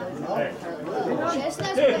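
Several voices talking and calling out over one another: players and spectators chattering, with one louder call near the end.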